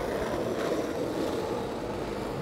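Skateboard wheels rolling on asphalt: a steady rolling rumble.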